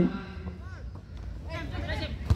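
Faint shouts and calls of players on an open football pitch, a couple of short cries in the first and second halves, over a low steady rumble.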